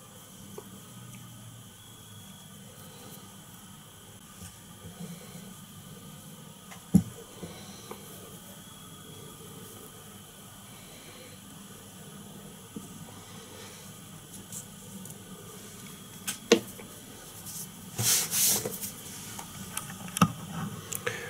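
Low steady room hiss broken by a few small sharp clicks and a brief louder rustle near the end: small handling noises from tying strands of holographic lurex onto a streamer fly.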